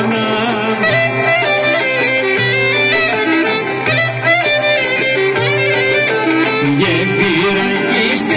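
Live Greek folk dance music played by a band, an instrumental stretch with an ornamented lead melody over a bass line that steps from note to note.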